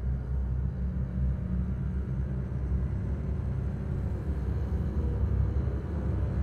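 Low, steady rumble on a trailer soundtrack, with no clear tune or rhythm.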